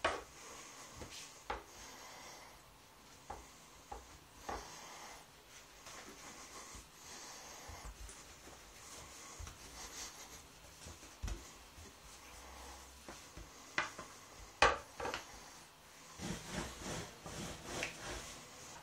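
Wooden rolling pin rolling out a thin sheet of dough on a countertop, with hands turning and smoothing the dough: faint rubbing and rolling broken by scattered light knocks, the loudest about two-thirds of the way through.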